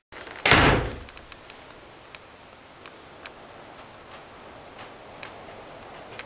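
A door in a small plywood hut being moved: one short, loud rumbling knock about half a second in, then a few faint light clicks.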